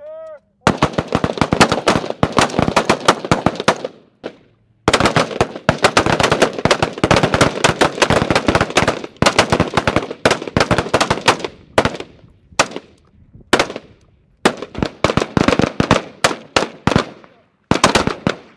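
Several AR-pattern 5.56 mm service rifles firing rapidly together on a firing line, the shots overlapping into a dense volley. There is a short break about four seconds in, and after about twelve seconds the firing thins to scattered shots and short strings.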